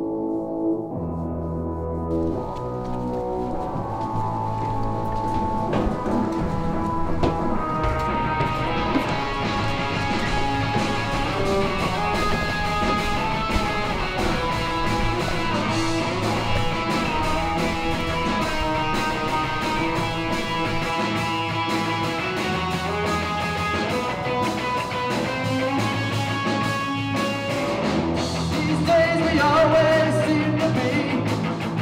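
Rock music: a soft opening of held tones builds into a full band with electric guitar and drums about eight seconds in, growing a little louder near the end.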